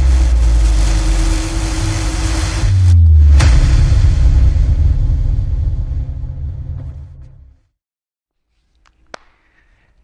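Cinematic logo-intro sound effect: a loud, deep rumble with whooshing and a sharp hit about three and a half seconds in, fading out at about seven and a half seconds. After it there is near silence with one short click near nine seconds.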